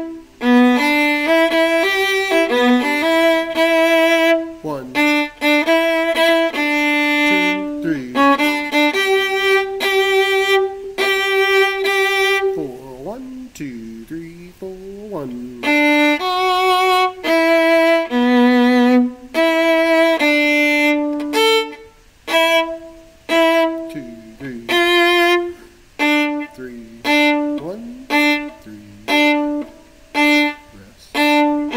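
Solo viola, bowed, playing an arrangement line in D major: a rhythmic run of short separate notes with a few longer held ones. About halfway through the playing drops to a softer stretch with sliding pitches before it picks up again.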